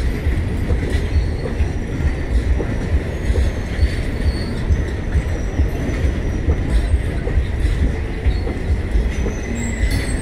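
Passenger train coaches rolling past close by: a steady rumble with repeated wheel thumps over the rail joints. A faint, steady high wheel squeal runs underneath, with short sharper squeals now and then.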